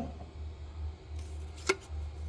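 Quiet room tone with a steady low hum, and one short sharp click about one and a half seconds in, as a hand handles the paper price tag on a ceramic crock.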